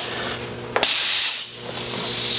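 Short blast of compressed air from an air-compressor blow-gun nozzle: a sudden loud hiss a little under a second in, lasting about half a second before trailing off.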